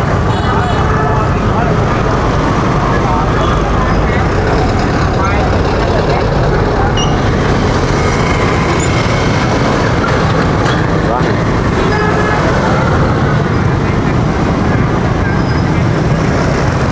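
Street traffic, mostly motorbikes, running steadily close by, with indistinct voices in the background.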